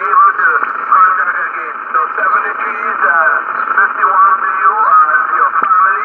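A man's voice received over single-sideband shortwave from the loudspeaker of a Yaesu FT-840 HF transceiver: thin, narrow-band and noisy speech, hard to make out.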